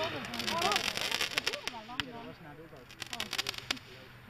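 A red Weco Torpedo firework going up, with a rapid run of crackling clicks in its first second. A single sharp click follows about two seconds in, and scattered crackles come near the end.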